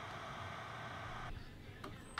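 Tenma Mini SMD hot-air preheater's fan running steadily with the heater switched off, blowing air to cool the unit: a faint even airy hiss that stops abruptly a little over a second in.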